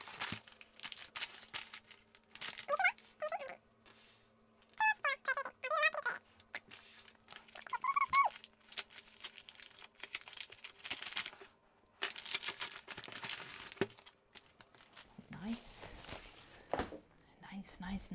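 Plastic mailer bag crinkling and rustling in bursts as it is handled and opened, the longest burst about two-thirds of the way through. Short, quiet muttered words come in between.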